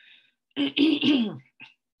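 A woman clearing her throat once, a rasping burst about half a second in that lasts about a second.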